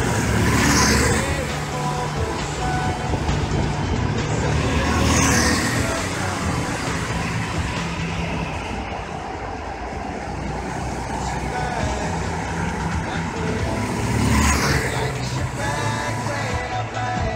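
Go-kart engines buzzing as karts drive around an indoor track, with three louder pass-bys: just after the start, about five seconds in and near the end.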